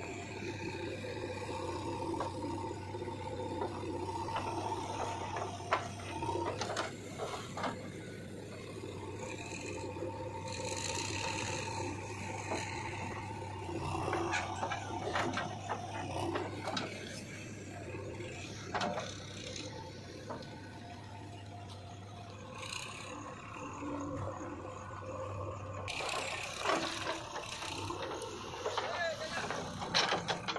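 JCB 3DX backhoe loader's diesel engine running as it digs and loads earth, with scattered knocks and clatters from the working bucket and arm. A steady low hum drops out a few seconds before the end, and the sound grows louder and brighter in the last seconds.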